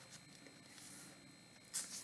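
Mostly near silence, then a faint short rustle of thin Bible pages being leafed through near the end.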